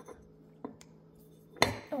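Ceramic covered dish being handled on a stone countertop: a couple of faint clicks, then one sharp knock about one and a half seconds in as the dish is picked up and tipped.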